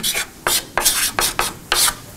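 Chalk writing on a blackboard: a quick run of about ten short, scratchy strokes as a handwritten term is drawn.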